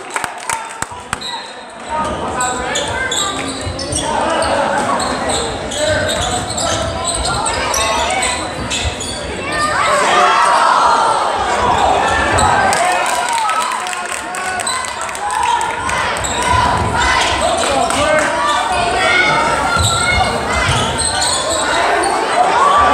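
Basketball bouncing on a hardwood gym floor, with short high squeaks of sneakers and crowd voices echoing in the gym; the squeaks come thicker from about halfway in.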